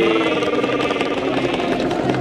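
A motor vehicle's engine running steadily, with voices behind it.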